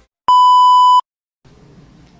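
Test-tone beep of TV colour bars: one loud, steady electronic beep lasting under a second, starting a moment in and cutting off sharply, followed by a faint hiss.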